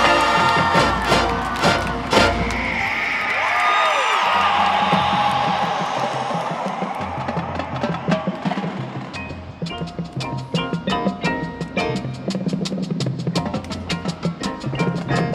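Marching band playing its field show. Loud full-band chords with sharp accents open it and settle into a held, swelling sound. From about eight seconds in, a quick run of short struck percussion notes sounds over low held tones.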